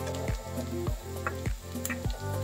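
Minced garlic frying in melted butter in a nonstick pan, a steady sizzle, stirred with a spatula. Background music with a steady beat plays over it.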